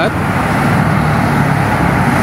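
Steady traffic noise from cars driving on a multi-lane toll motorway.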